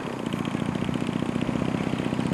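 A small engine running steadily at constant speed, with a fast, even beat.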